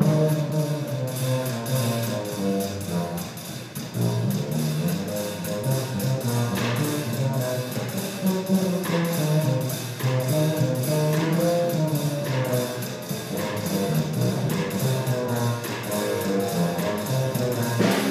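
Small jazz combo playing a swing tune: keyboard and upright bass notes over drums keeping a steady cymbal beat.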